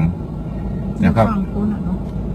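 A steady low rumble of a vehicle engine running close by, heard under a man's brief speech about a second in.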